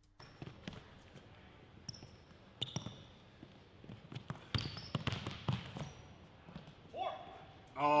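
A basketball being dribbled on a hardwood court, a run of separate bounces, with sneakers giving brief high squeaks on the floor.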